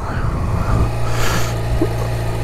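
Yamaha XJ6's 600 cc inline-four engine, derived from the Yamaha R6's, idling steadily with an even hum; it sounds like a sewing machine.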